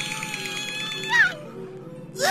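A long, high, held wordless cry that slides down in pitch and breaks off about a second in, over soft background music with steady repeating notes.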